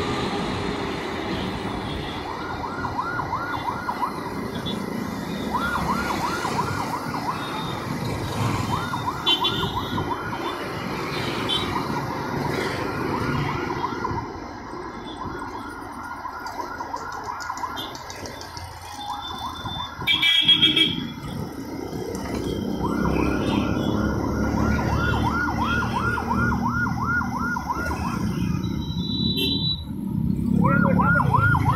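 A siren sounding in runs of fast, repeated rising-and-falling whoops that stop and start several times, over a steady low road-traffic rumble. About twenty seconds in comes a short, louder pitched blast.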